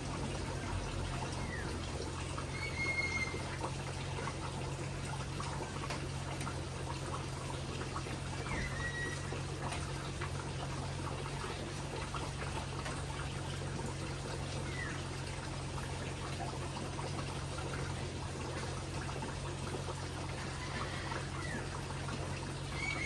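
A steady hiss over a low hum, with a bird chirping briefly about every six seconds.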